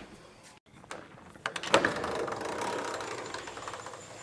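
A sliding glass patio door is unlatched with a few sharp clicks and rolled along its track, giving about two seconds of rattling rumble that fades near the end.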